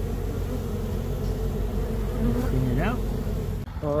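A cluster of honey bees buzzing at close range: a steady hum, with single bees' pitch rising and falling as they fly past. The sound cuts out briefly near the end.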